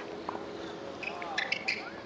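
A tennis ball struck by a racket, one sharp pop right at the start. The rest is a low outdoor court background with a few faint short high squeaks about a second and a half in and a faint distant voice.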